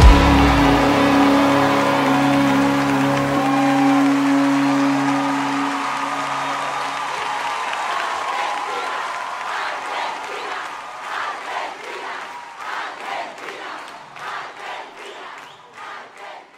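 The final chord of a live worship band ringing out and dying away over several seconds, followed by audience applause and cheering that fades out toward the end.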